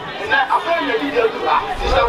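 People talking, with overlapping chatter from several voices.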